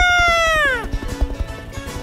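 A high, loud cartoon creature call with a bright, buzzy tone that slides down in pitch and ends within the first second, over background music with a steady beat.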